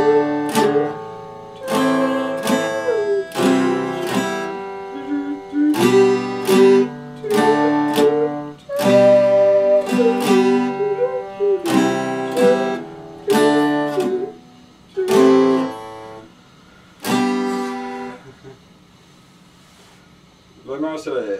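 Epiphone acoustic-electric guitar strummed in a steady run of chords, each ringing out, the playing dying away about two seconds before the end.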